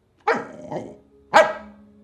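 A small dog barks twice, a short bark and then a louder, sharper one about a second later.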